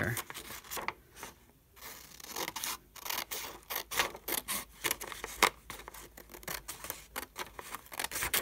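Handheld scissors cutting through a sheet of paper: a quick series of crisp snips, several a second, with a short pause about a second in.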